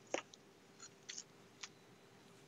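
A carving knife sawing through the crisp crust of a roasted prime rib on a wooden cutting board: about five short, faint scraping crunches.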